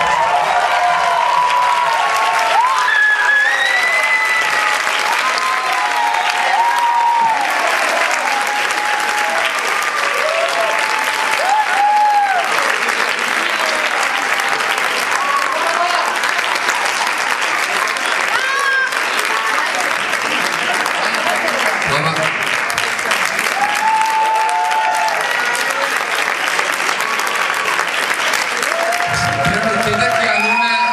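Theatre audience applauding steadily at a curtain call, with voices shouting and calling out over the clapping.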